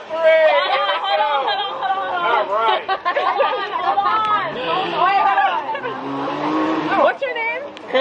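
Several people talking and laughing over one another. A car drives past in the middle, its engine rising in pitch for about three seconds before it cuts away.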